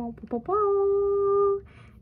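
A woman's voice sings or hums: two short syllables, then one long steady note held for about a second, like a little fanfare as the ornament is lifted out.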